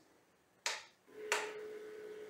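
Two sharp clicks as the Revopoint dual-axis 3D-scanner turntable is switched on with its button, then the steady, faint whine of its motor as the turntable starts moving to its home position.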